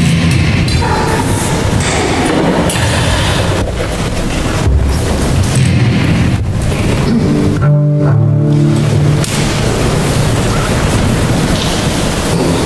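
Double bass played with the bow: a dense, rough, loud sound, with a clearer sustained low note about eight seconds in.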